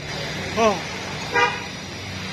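Street traffic with a steady engine hum and a short vehicle horn toot about a second and a half in.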